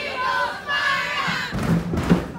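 Cheerleading squad shouting a cheer in unison, many high voices yelling together. Near the end come a couple of sharp impacts in rhythm with the cheer.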